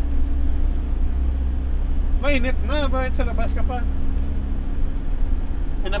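Steady low rumble of a passenger van's engine and road noise, heard from inside the cabin while it drives. A man speaks briefly about two seconds in.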